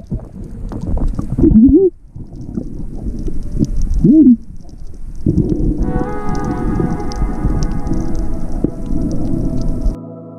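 Muffled underwater sound with constant churning water. A person's voice, muffled through a snorkel, squeals twice, rising and falling in pitch, about one and a half and four seconds in. Background music with held keyboard notes comes in about six seconds in.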